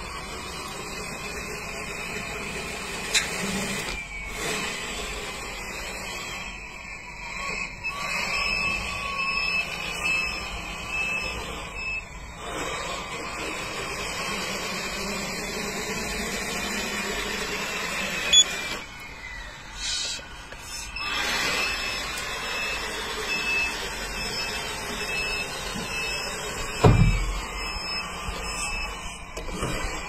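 Electric motors of a radio-controlled tractor-trailer tipper truck whining as it drives and its tipping bed lowers and lifts, the pitch wavering and gliding. A sharp click about three seconds in, another past halfway, and a low thump near the end.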